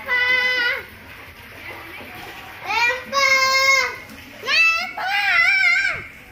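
A child's voice calling out in long, high-pitched, drawn-out shouts, four times, with a quieter gap of about two seconds after the first.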